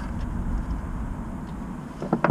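Steady low background rumble with no distinct knocks or clinks.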